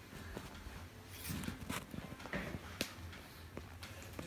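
Faint handling noise from a phone being moved about: soft rustling with scattered light clicks, busiest around the middle.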